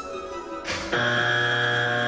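Background music made of steady held tones; a short swish comes in just before a louder sustained chord, about a second in.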